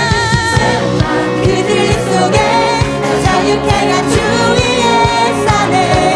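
Live contemporary worship song sung in Korean: a female lead vocalist with backing singers over a full band with a steady drum beat.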